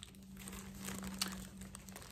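Clear plastic wrapping crinkling in the hands as a small item is handled and turned over, a run of light crackles, over a faint steady low hum.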